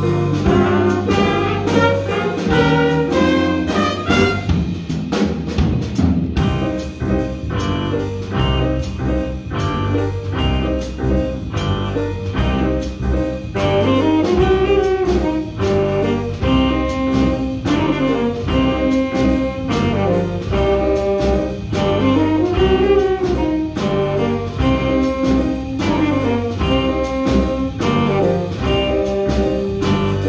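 A jazz band playing live: saxophones and trumpets over drum kit, electric guitar and electric piano, with drum hits keeping a steady beat.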